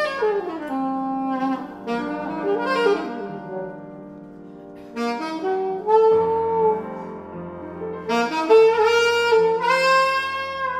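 Alto saxophone improvising in free jazz style: short phrases with sliding, bending notes, a softer spell in the middle, then longer held notes in the second half.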